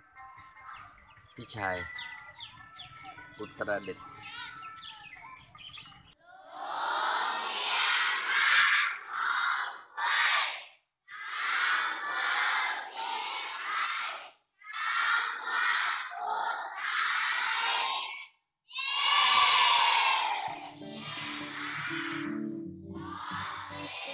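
A hall full of schoolchildren speaking loudly together in unison, in short phrases broken by brief pauses.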